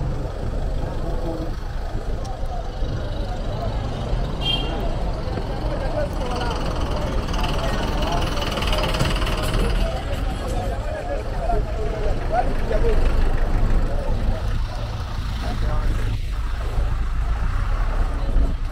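Busy city street ambience: motor vehicles running close by, with a steady low engine rumble, and indistinct voices of passers-by.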